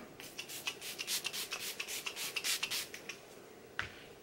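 Pump bottle of Milani Make It Last setting spray spritzed over and over in quick succession: a rapid run of short hissing sprays, about five a second, stopping about three seconds in. A single click follows near the end.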